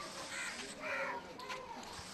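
Faint bird calls in the background: a few short calls about half a second apart.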